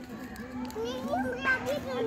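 Children's voices in the background: faint, wavering calls and chatter of children playing.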